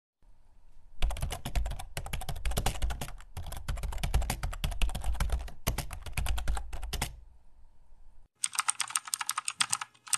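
Computer keyboard typing sound effect: rapid runs of key clicks with brief gaps, stopping about seven seconds in, then a thinner, brighter run of clicks near the end.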